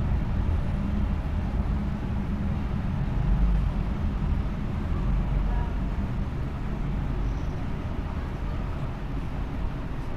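A steady low background rumble, even throughout, with no distinct knocks or clicks.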